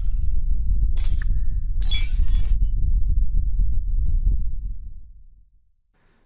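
Logo-intro sound effects: a deep bass rumble that fades out about five seconds in, with short glitchy hits near the start and around one and two seconds in.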